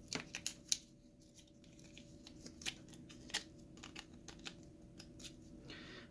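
Light clicks and taps of plastic parts handled in the fingers: the gas valve's white plastic housing and its small circuit board with connector knocking together. There is a cluster of clicks in the first second, then single ones now and then, over a faint steady hum.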